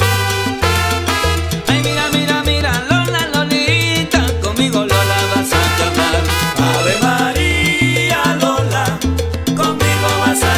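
Salsa band recording playing an instrumental passage without singing, a rhythmic bass line pulsing under the band.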